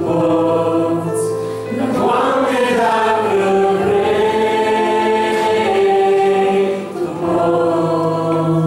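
A man and a woman singing a slow Christian worship song in harmony over keyboard accompaniment, with long held notes.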